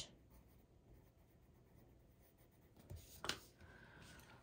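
Faint scratching of a pencil writing on a paper sheet, then two brief soft handling sounds of paper and pencil about three seconds in.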